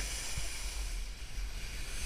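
Snowboard sliding over groomed snow with a steady hiss, while wind buffets the helmet camera's microphone as a low rumble.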